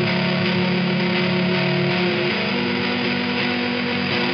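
Electric guitar through a fuzz pedal and amplifier, playing slow, sustained distorted chords that shift a few times.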